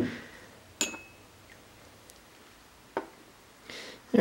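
Two light clinks of glass laboratory beakers, about two seconds apart, the first ringing briefly with a high tone.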